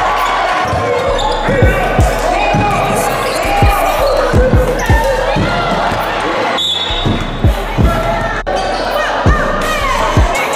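Basketball bouncing on a hardwood gym floor during play, a string of sharp thuds at an uneven pace with a short break in the middle, over voices in a large gym.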